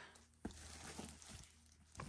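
Near silence, with a faint click about half a second in and faint rustles of the plastic wrapping being cut off a new exercise mat.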